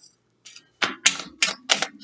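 A deck of tarot cards shuffled by hand: a quick, uneven run of about seven sharp card snaps, bunched in the second half.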